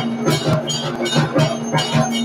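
Aarti music: drums beaten in a fast, even rhythm of about four or five strokes a second, with ringing metallic tones.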